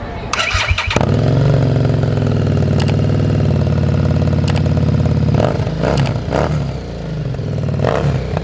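Harley-Davidson Street 750's V-twin, fitted with a loud aftermarket exhaust, is cranked on the starter and catches about a second in. It idles steadily, then is given several short throttle blips from a little past halfway.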